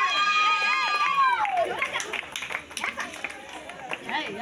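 Crowd chattering, with one long high-pitched call or tone early on that wavers slightly, holds for about a second and a half, then falls away in pitch.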